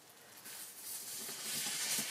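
Aerosol can of expanding foam hissing as foam is pushed out through its straw nozzle, starting faint and growing steadily louder.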